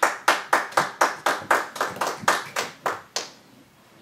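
Hands clapping in a steady rhythm, about four claps a second, stopping a little after three seconds in.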